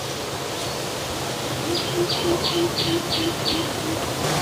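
Outdoor ambience with a steady hiss. In the middle, an animal calls a short run of about six evenly spaced notes, roughly three a second.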